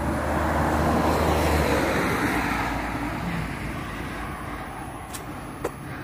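A road vehicle passing by: tyre and engine noise swells over the first second or two, then fades away over the next few seconds.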